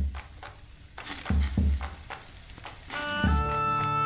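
Fire crackling and meat sizzling on a spit over a hearth fire, with a few low thumps. About three seconds in, lively folk music starts: a pipe and a lute over a drum.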